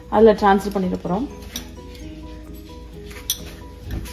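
A woman's voice speaks briefly, then soft background music with steady held notes. There is a single light click about three seconds in.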